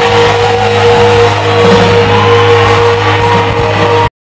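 Rock band playing live with electric guitars, loud from the crowd, holding steady notes throughout.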